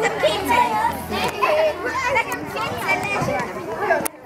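A group of children talking and calling out over one another, with several high voices overlapping.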